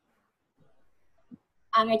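A near-silent pause, then a voice saying "need to" near the end, part of an English reading lesson.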